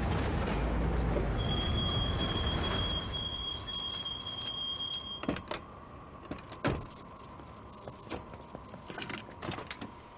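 Car driving with a low rumble for about three seconds, then quieter, with scattered sharp clicks and scrapes and a thin high steady whine for a few seconds in the middle.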